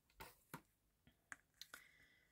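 Near silence broken by a handful of faint, short clicks and taps as a clear photopolymer stamp is handled over the work surface.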